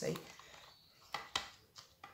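Stir stick knocking against the inside of a plastic cup while stirring paint mixed with pouring medium: two sharp clicks a little over a second in and a softer one shortly after.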